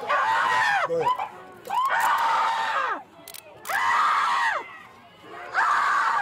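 A person screaming over and over without words: four long screams about two seconds apart, each rising and then falling in pitch.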